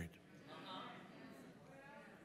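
Faint congregation voices calling out in response to the preaching, with a drawn-out call near the end, heard through the sanctuary's reverberation.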